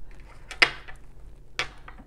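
Small tumbled crystal stones set down one at a time on a wooden tabletop: two sharp clicks about a second apart, the first the louder.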